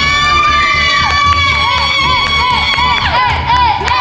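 Girls screaming with excitement: one long high-pitched scream, then a run of rapid repeated squeals, about four a second.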